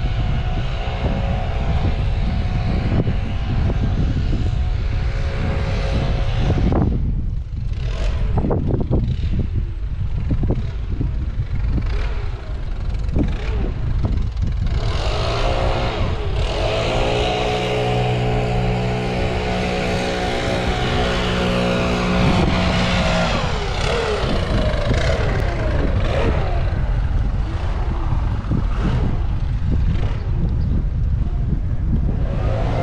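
Travelling noise of a slow vehicle moving along a brick-paved street: a steady low rumble of wind on the microphone and tyres rolling. A droning hum rides on top for the first six seconds or so and again for several seconds past the middle.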